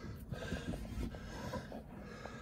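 Faint rumble and rustle of a hand-held phone being moved about close to the microphone, with no distinct event.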